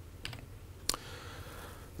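A few faint laptop key clicks: a couple about a quarter second in, then one sharper click just before a second in, as the presentation is advanced to the next slide.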